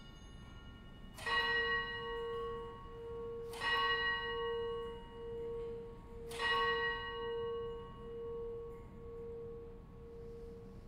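A bell struck three times, about two and a half seconds apart, each stroke ringing on over a pulsing hum. It is the consecration bell, marking the elevation of the chalice after the words of institution.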